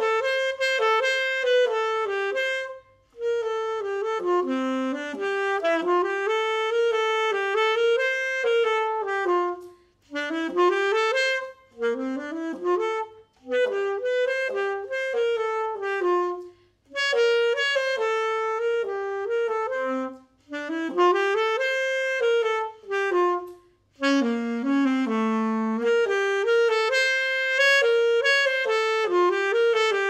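Alto saxophone playing a lively solo melody in short phrases, with brief breath pauses between them and no accompaniment heard under the gaps.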